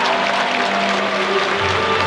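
Music played over the stadium public-address system, sustained chords with a new low note coming in about one and a half seconds in, over a haze of crowd applause.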